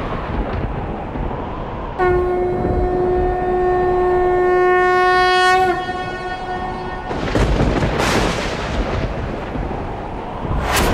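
Train horn sounding one long, steady note for about four seconds, with a slight dip in pitch as it ends, over the rumble of a passing train.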